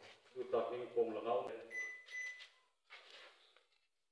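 A man speaking through a microphone for about two and a half seconds, then fainter. A brief high electronic beep sounds over the end of his words, about two seconds in.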